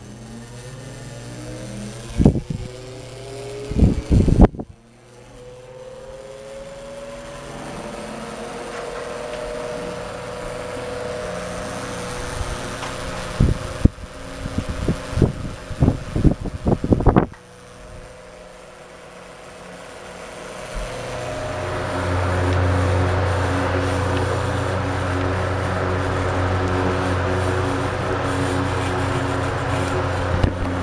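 Oscillating electric desk fans running: a motor hum that rises in pitch as a fan spins up and then holds steady, with sharp clicks and knocks of switches and handling in between. About twenty seconds in, another fan starts with a low hum and a rush of air that builds and then runs steadily, louder.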